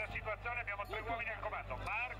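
Faint, distant voices talking over a steady low hum.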